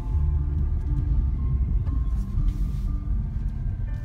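Low rumble of a car driving slowly, heard from inside the cabin, with music playing over it in held notes.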